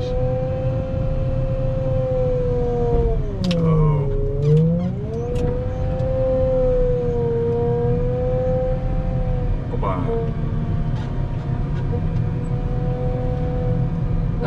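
Wheel loader running with a steady high whine over a low engine drone. About four seconds in, the whine's pitch sags and recovers, as under load, with a few short knocks.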